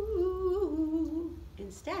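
A woman's voice singing a wordless, descending line: a held note that steps down three times in pitch, the B–A–G–E pattern, ending about a second and a half in. A short spoken word follows at the very end.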